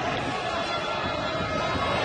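Football stadium crowd ambience: a steady, even murmur of spectators with no clear shouts or chants.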